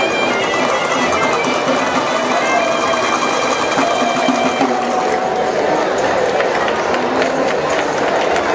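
Bagpipes playing a tune in held, steady notes over crowd chatter; the piping dies away about five seconds in, leaving the crowd's voices.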